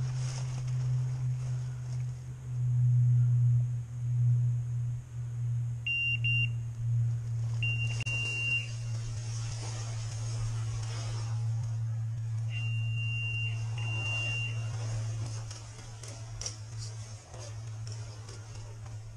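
Electronic beeper collar on a hunting pointer giving high, single-pitched beeps: a short double beep, then three beeps of about a second each, spaced a few seconds apart. This beeping is the collar's point signal, telling the hunter the dog is standing on point. A steady low hum runs underneath.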